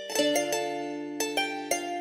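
Melodic plucked-string loop of a trap instrumental: single notes picked one after another, each ringing and fading, with no drums yet.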